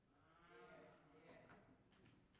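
Near silence: faint room tone, with a faint wavering voice-like sound in the first second.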